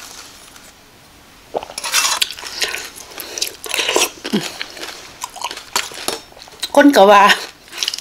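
Close-up eating sounds: a spicy Isan cucumber salad with rice noodles being eaten from a spoon, chewed and sucked in, in a run of irregular noisy bursts that starts after about a second and a half of quiet.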